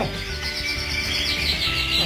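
Canaries singing: fast repeated trill notes up high and a long held whistle note.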